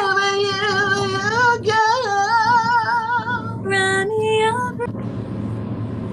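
A woman singing a slow ballad line over a livestream, holding long notes with a wavering vibrato. The singing stops about five seconds in, leaving a steady low hum.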